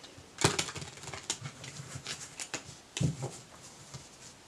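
A deck of Lenormand cards handled in the hands: a quick run of card flicks and rustles, then a card put down on the table with a soft slap about three seconds in.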